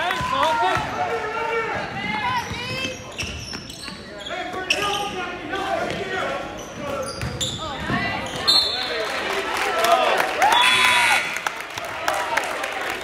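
A basketball being dribbled on a hardwood gym floor in a reverberant gym, with repeated sneaker squeaks and distant shouts. A short, shrill referee's whistle sounds about a second before the end as play stops.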